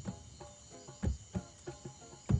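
Nyabinghi drums struck in a sparse, loose rhythm: a few low strikes with a short ringing tone, about five in two seconds. Crickets chirp steadily underneath.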